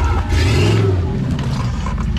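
Rock buggy engine giving a short rev as the buggy comes down a steep rock ledge, its pitch rising then falling again within about half a second, over a steady low running drone.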